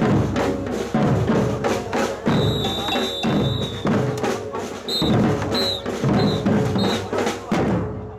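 A group of strap-on marching drums played with sticks in unison, with a strong accent about once a second. A high steady note sounds for about a second, then four short high notes at even spacing, and the drumming stops at the end.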